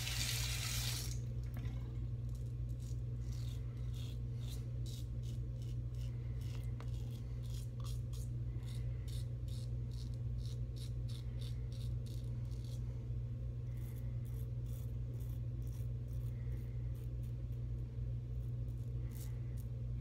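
Executive Shaving Co. Outlaw stainless steel double-edge safety razor scraping through lathered stubble on an across-the-grain pass: short rasping strokes, a couple a second, in runs with brief pauses, over a steady low hum.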